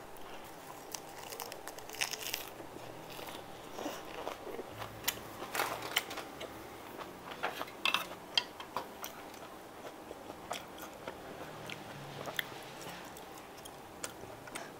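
Close-miked mouth sounds of a person chewing and biting mixed steamed pork offal: irregular wet clicks and soft crunches, busiest in the middle and thinning out toward the end.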